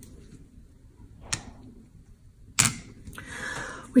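Small plastic bubble level being set down on glass mosaic-tile coasters: a light click about a second in and a louder knock about two and a half seconds in, then a soft rustle.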